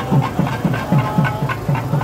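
Procession drums beating a steady, fast rhythm, about four beats a second.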